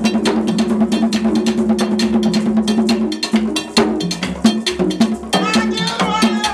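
Vodou ceremony drumming: drums and sticks beaten in a fast, dense rhythm with a metal bell clanging on the beat.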